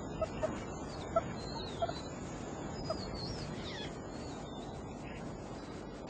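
Steady outdoor background hiss with scattered short bird calls: brief chirps and a few wavering high whistles.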